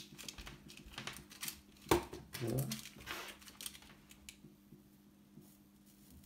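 Soldering work at a bench: light clicks and taps as the soldering iron and small parts are handled around a vise, scattered through the first few seconds and fading after that. A low steady hum runs underneath.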